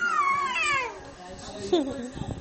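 A high-pitched, meow-like cry that rises and then falls, followed near the end by a second, shorter falling cry.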